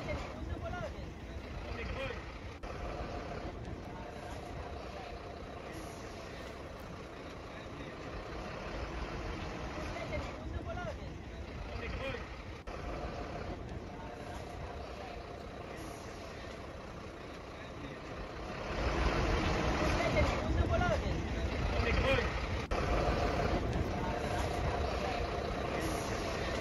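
Steady low rumble with indistinct voices now and then, growing louder about nineteen seconds in.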